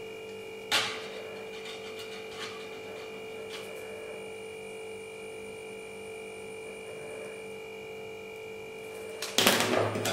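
Steady electrical hum with a single sharp click about a second in, then a short louder burst of rustling near the end.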